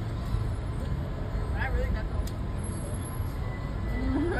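Steady low rumble of a car driving slowly, heard from inside the cabin, with a brief faint voice about one and a half seconds in.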